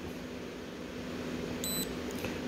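F-B32 fingerprint lock giving one short, high electronic beep about three-quarters of the way through, as the held manager print is accepted and the sensor ring lights green. A steady faint low hum runs underneath.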